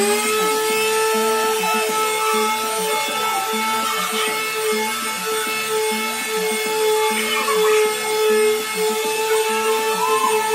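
Electric random orbital sander running at a steady, high whine after spinning up right at the start, sanding paint off a wooden frame.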